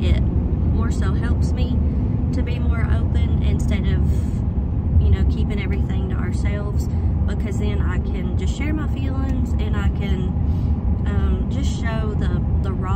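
A woman talking over the steady low rumble of road and engine noise inside a moving vehicle's cabin.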